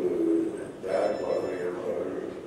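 A man speaking Tamil into a microphone over a hall's PA system, in two phrases with a short pause between them.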